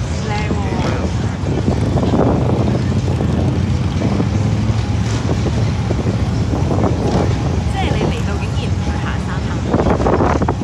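Wind buffeting the microphone of the camera on the SlingShot ride's capsule as it hangs and turns high in the air, a loud, steady low rumble with faint voices of the riders now and then.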